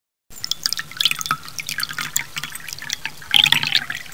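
Water drops falling into water: many separate plinks and drips, irregular and closely spaced, beginning about a third of a second in.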